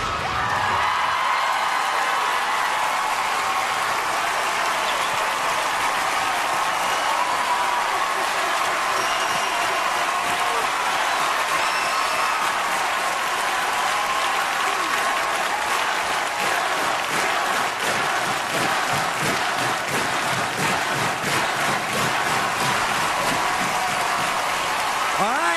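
Studio audience cheering, screaming and applauding steadily after the dance music cuts off right at the start; the clapping grows more distinct in the second half.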